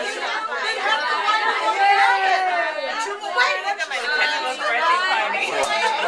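A group of people talking and calling out at once, many voices overlapping in a room.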